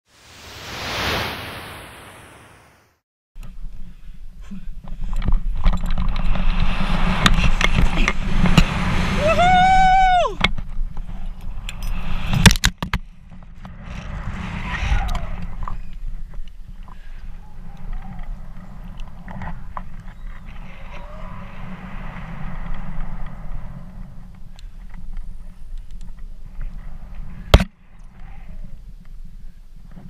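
Rushing air buffeting a GoPro's microphone through a rope jump from a bridge, a loud low rumble from about three seconds in. Around ten seconds in a voice cries out once, and there are sharp clicks near the middle and near the end. It opens with a brief swelling whoosh over the black screen.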